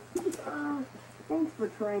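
A person's soft voice making a few short, low hum-like sounds, each under half a second, ending with the word "Daddy".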